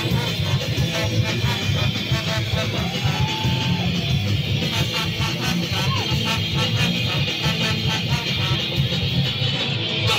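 Live ska punk band playing: electric guitars, drum kit and a horn section of saxophone, trumpet and trombone, in a steady beat.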